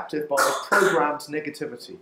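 Speech: a voice talking, the sermon carrying on between sentences.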